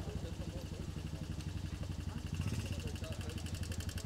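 An engine running steadily without revving, with a fast, even throb, under faint voices.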